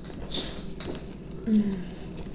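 A bite into a burger, with a short crisp crunch about a third of a second in. Then comes mouth-closed chewing, and about a second and a half in a short falling "mm" hum.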